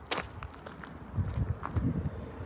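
A sharp click just after the start, then a few soft low thumps in the second half, over quiet outdoor background.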